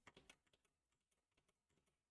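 Near silence broken by a few faint computer-keyboard key clicks, clustered in the first half second, with a few softer ticks after.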